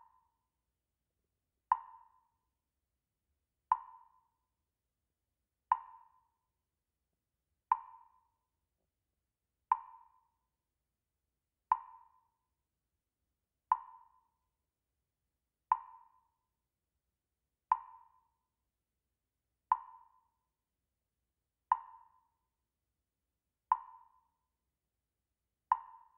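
Short, sharp, pitched ticks repeating evenly, one every two seconds, thirteen in all, with silence between them.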